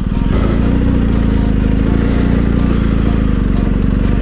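BMW R 1250 GS boxer-twin engine running steadily as the motorcycle rides along a muddy dirt track.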